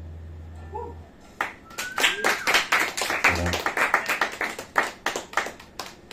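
The last low note of an acoustic guitar fades out in the first second. Then an audience applauds for about four and a half seconds at the end of a song.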